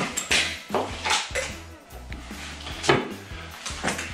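Epoxy resin dispenser pumps being pushed down, a few sharp clicking strokes with plastic clatter as resin is pumped into a plastic mixing cup.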